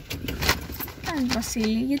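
Low rumble inside a car's cabin, with a few quick clicks in the first half second, then a voice speaking.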